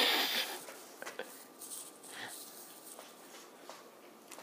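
A kitten scuffling inside a cardboard cereal box: a loud burst of cardboard rustling at the start, then scattered light scratches and taps on the cardboard.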